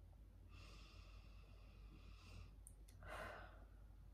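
Near silence with a steady low hum and faint breathing: a long soft exhale, then a short, slightly louder breath about three seconds in.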